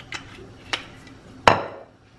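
A few light clicks, then one sharp knock about a second and a half in: a glass olive oil bottle being handled and set down after drizzling oil over dough.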